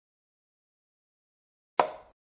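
Silence, then near the end a single short, sharp click: a chess program's piece-move sound effect as a knight is placed on its square.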